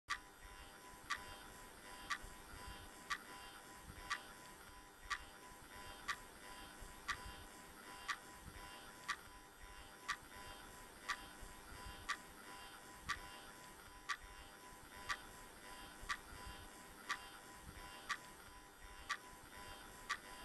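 A clock ticking slowly and evenly, one tick a second, over a faint steady hum.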